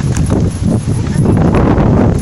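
Loud, irregular low rumble and knocks of wind and handling on a handheld phone's microphone as it is carried about over grass, with indistinct voices.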